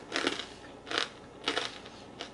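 Chewing a bite of extra-toasted sourdough toast with pesto and mozzarella, giving a few crisp crunches about half a second apart.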